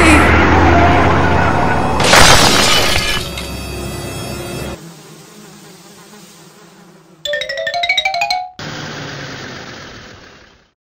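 Cartoon car crash sound effect: a loud crash about two seconds in that dies away over a couple of seconds, followed later by a short rising musical sting and a fading hiss.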